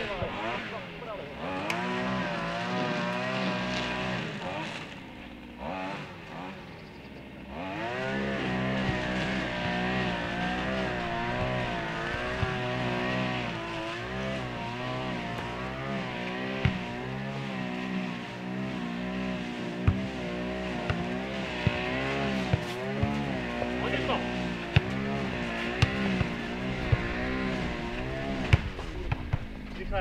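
A motor engine runs the whole time, its pitch wavering up and down. It drops away about five seconds in and swings back up near the eight-second mark. In the second half come scattered sharp knocks, the ball being kicked.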